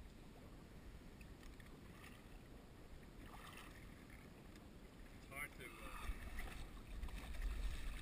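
Faint wind and water noise against a small boat's hull, building over the last couple of seconds into splashing as a striped bass is scooped into a landing net.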